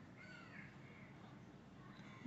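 Near silence: faint room hiss, with one faint, short bird call, a caw-like sound, near the start.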